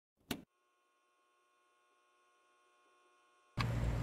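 A single short click about a third of a second in, then near silence. Near the end, steady room noise with a low hum comes in.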